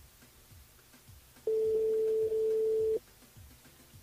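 Telephone ringback tone on an outgoing call: one steady beep about a second and a half long, the French-style ring signal that the called phone is ringing.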